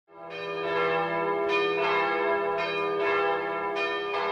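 Bells ringing, a new stroke about every second over the steady hum of the earlier strokes.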